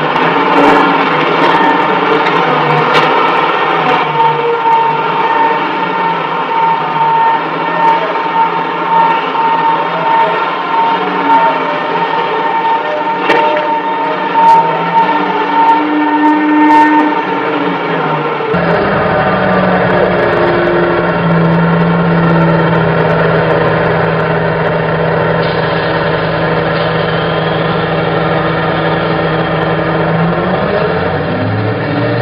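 Heavy quarry machinery, a large wheel loader working a granite block, running loudly with steady whining tones and a few sharp knocks. About two-thirds of the way through the sound cuts abruptly to a different, lower steady machine hum.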